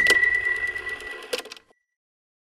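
Logo sound effect for an animated channel end card: a sharp hit with a high ringing tone that fades, over a quick run of ticks, ending with one last click and cutting off sharply about 1.7 seconds in.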